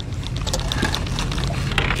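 Steady low rumble of wind and water around an open fishing boat, with quick, even ticking from a fishing reel being cranked as a fish is played on the line.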